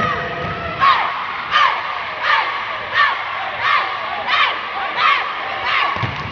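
A group of performers shouting a chant in unison in a steady rhythm, about eight shouts, one roughly every three quarters of a second, over a background of crowd noise.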